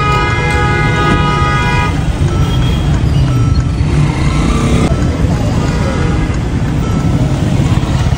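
Road traffic heard from inside a moving vehicle: steady engine and road rumble, with a long car-horn blast that ends about two seconds in and a few shorter horn toots later.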